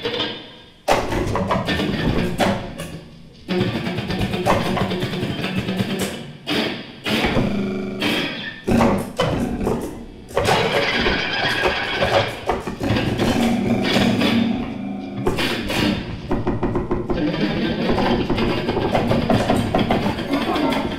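Free improvisation: an amplified wooden board struck with mallets gives irregular sharp knocks, over electronic sounds and electric guitar in dense, shifting stretches.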